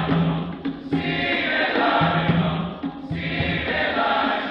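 Large men's choir singing in several parts, with sustained low notes under the upper voices.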